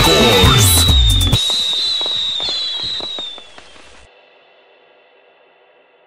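Merengue music stops about a second and a half in, leaving a run of sharp crackling pops like firecrackers under a high, steady whistle. Both fade out by about four seconds, and a faint hiss remains.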